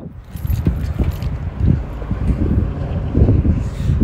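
Wind buffeting the microphone outdoors: an uneven low rumble.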